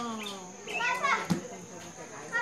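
Children's voices calling out and cheering, in long shouted calls, with a single sharp knock a little past halfway. A steady high-pitched whine runs underneath.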